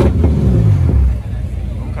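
A car engine revs and its pitch falls away over about a second, then it drops back to a lower rumble.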